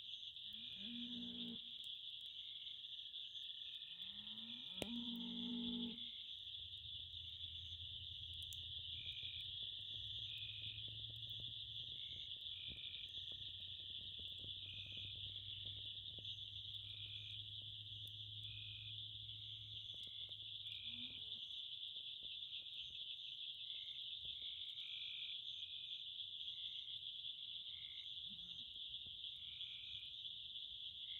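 Night chorus: insects trill steadily and high-pitched, while a short chirp repeats about once a second. A frog croaks low twice, the louder croak about five seconds in. Faint crackling comes from the wood fire in the rocket stove.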